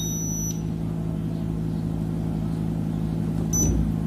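Washing machine control panel: the last high note of its electronic chime ends in the first half-second, then a steady low hum runs under, and one short high beep sounds near the end as a program button is pressed.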